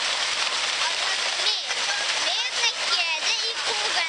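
Steady splashing of a large fountain, its water jets falling into the basin. A child's voice talks over it from about a second and a half in.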